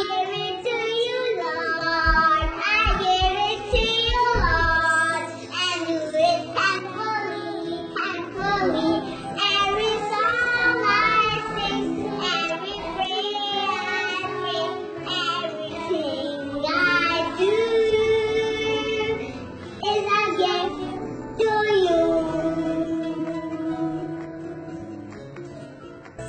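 A young girl singing a song with musical backing, her melody gliding between held notes. A few low thumps sound between two and five seconds in.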